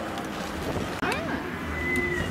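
Harbourside ambience: a low engine rumble from motor cruisers moving through the harbour, with wind on the microphone and people's voices. The sound breaks off for an instant about a second in.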